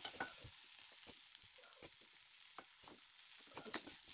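Faint sizzling of diced pumpkin frying in an aluminium pan, with irregular scrapes and taps of a spatula stirring it against the pan.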